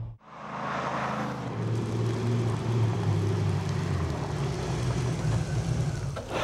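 The 5.7-litre Chevy V8 of an Ultima Sportster running as the car is driven, a steady engine note that shifts in pitch about four seconds in.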